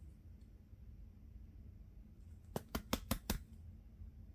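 Baseball trading cards being handled and flicked through: a quick run of about five sharp clicks, lasting under a second, about two and a half seconds in, over a faint low hum.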